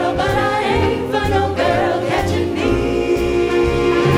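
A five-voice jazz vocal group singing in close harmony over a big band, with upright bass and drums underneath. The voices hold long notes as a chord through the latter part.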